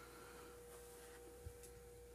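Near silence: room tone with a faint steady tone and low hum.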